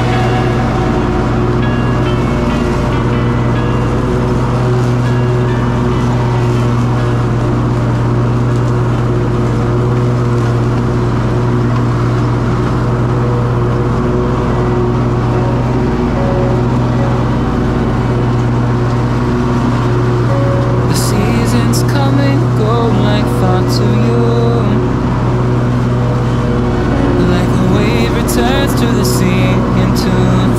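Background electronic-style music over the steady drone of a stand-on commercial mower's engine running at cutting speed. A singing voice comes into the music about two-thirds of the way through.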